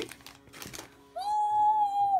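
Faint rustling of the pin packet being handled, then a woman's drawn-out excited "woo", held on one pitch for about a second and sliding down at the end.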